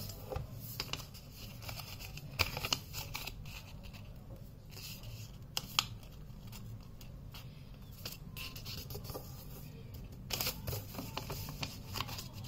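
A sheet of paper being folded by hand and its creases pressed flat: soft rustles, short scrapes and small taps, with a busier run of them near the end.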